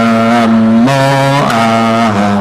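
Slow Buddhist chanting of the Buddha's name (nianfo): voices hold long, drawn-out syllables that step to a new pitch about every half second.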